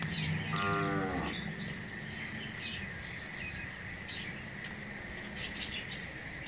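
A cow gives one short moo about half a second in, its pitch dropping slightly as it ends. Small birds chirp on and off in the background.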